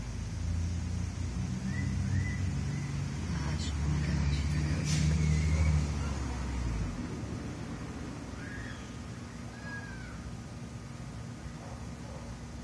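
A motor engine runs with a low drone that grows louder and then stops about seven seconds in. A few short high chirps and a couple of sharp clicks sound over it.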